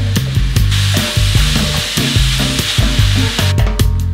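Minced meat sizzling in a hot stainless-steel frying pan as it is scraped in from a wooden board. The sizzle starts about a second in and cuts off shortly before the end, over background music with a bass line.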